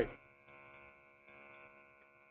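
Faint, steady electrical hum with many evenly spaced overtones on a conference-call audio line. It holds level without changing pitch.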